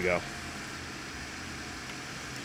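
Audi Q5 engine idling steadily, just started by the remote starter.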